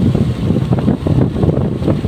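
Wind buffeting the microphone of a moving camera, a loud, uneven low rumble.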